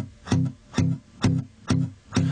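Song intro on guitar: single plucked notes repeating about two a second, each dying away before the next.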